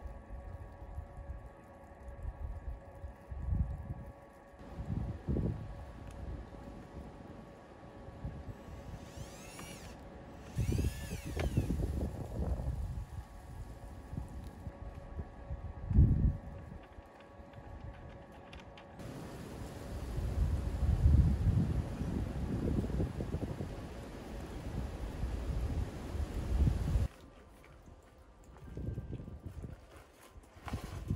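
Outdoor wind gusting over the microphone in uneven low surges, under a faint steady hum, with one sharp knock about halfway through.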